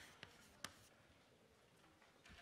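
Faint chalk writing on a blackboard, with two short taps about a quarter and two-thirds of a second in, barely above near silence.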